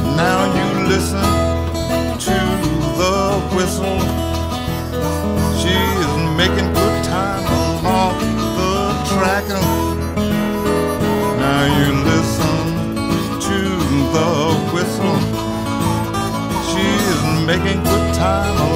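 Acoustic blues: fingerpicked acoustic guitar with harmonica playing an instrumental break, with many quick bent notes.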